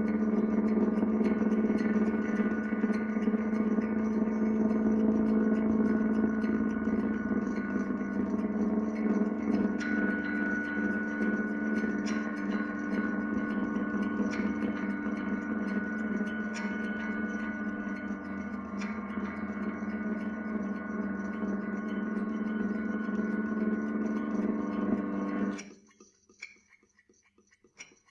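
Electric guitar drone processed through effects pedals and an amplifier: a dense, sustained layer of steady low and mid tones, with a higher tone entering about ten seconds in. It cuts off abruptly just before the end.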